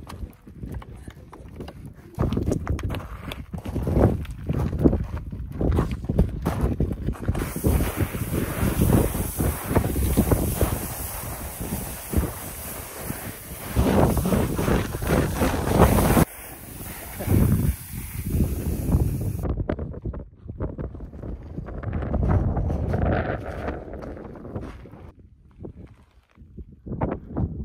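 Wind buffeting the microphone: a gusty low rumble with hiss, which changes abruptly several times, about 2, 7, 16 and 19 seconds in.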